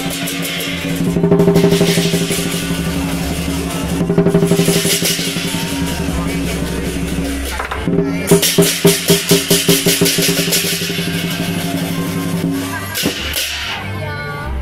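Lion-dance percussion: drum and cymbals played without a break over a steady held tone. A fast run of loud strikes comes about two-thirds of the way through.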